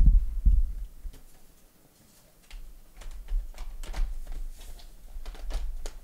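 A laptop's bottom cover being put back on: a dull thump as it comes down onto the chassis, a second thump about half a second later, then from about two and a half seconds in a run of light clicks and knocks as the cover is pressed and fitted into place.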